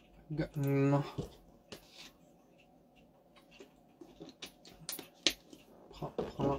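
A man's voice, briefly, in a short wordless vocal phrase about half a second in. After it comes near quiet with scattered sharp clicks of a computer mouse and keyboard, a few seconds apart.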